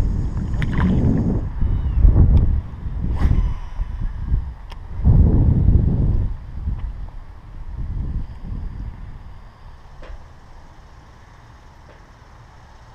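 Wind buffeting the hat-mounted camera's microphone: a low rumble that comes and goes in several gusts, then dies down over the last few seconds.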